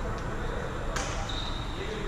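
A badminton racket strikes a shuttlecock once, about a second in, with a sharp crack and a short ring of hall echo. It is followed by a short, steady, high squeak.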